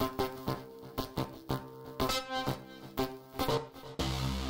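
Farbrausch V2 software synthesizer playing a preset: a repeating sequence of bright synth notes, a new note about every half second.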